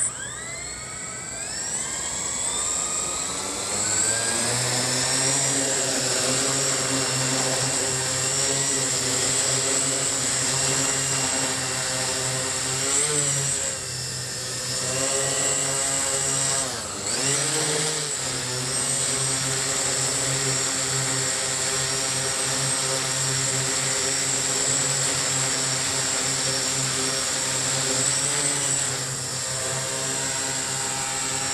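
The eight electric motors and propellers of a large octacopter spin up with a rising whine over the first few seconds after a brief click. They settle into a steady multi-tone propeller buzz as it lifts off and hovers low. The pitch wavers and dips briefly a couple of times mid-way as the unloaded machine wobbles in ground effect, its motors too powerful without a payload.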